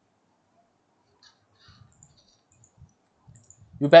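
Near silence with a few faint computer-mouse clicks, then a man's voice starting near the end.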